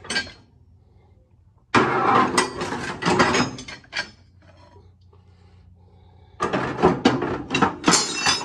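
Steel tire irons and bars clanking and scraping against each other and the sheet-metal bin as they are moved about, in two bouts: one about two seconds in, and another starting near the end.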